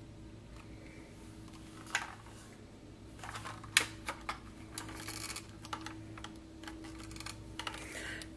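Faint, scattered clicks and small taps of crafting supplies being handled on a desk, busiest from about three to five and a half seconds in, over a steady low hum.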